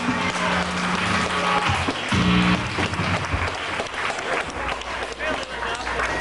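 Audience clapping and chattering while the band holds a few sustained low notes on stage.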